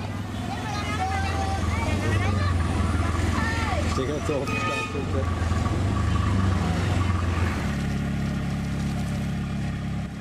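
Auto-rickshaw (tuk-tuk) engine running in slow stop-and-go traffic, with voices of people on the street over it in the first half. About three-quarters of the way in the engine hum changes to a steadier, slightly higher drone.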